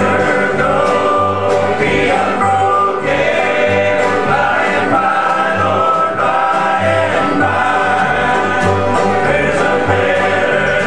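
An old-time string band playing live, with acoustic guitar, banjos and fiddle, and several voices singing together. Bass notes pulse steadily under it, about two a second.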